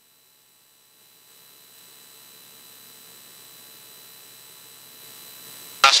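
Faint, steady hiss with a low hum, the background noise of a cockpit headset and intercom feed. It fades in from near silence over the first second or two, as if a noise gate were opening, and stays low and even. A voice starts at the very end.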